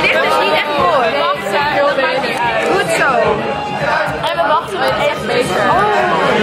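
Several voices chattering over one another.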